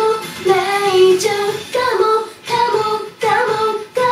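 J-pop song playing: high female vocals sing a melody in short phrases over a backing track.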